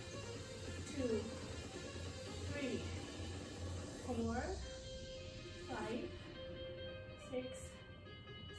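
Background music with a singing voice over a steady bass line.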